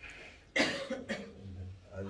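A person coughing: a sharp cough about half a second in, followed by a weaker second one.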